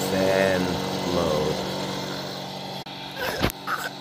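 Electric space heater's fan humming steadily under a man's drawn-out, wavering voice. The hum stops abruptly about three seconds in, followed by a single sharp thump and a few short vocal sounds.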